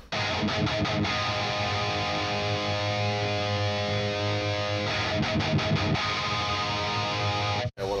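Electric guitar played through the Fortin Nameless amp simulator's high-gain channel with the bass and mids turned up: heavily distorted chords and quick chugging strokes, cutting off abruptly near the end.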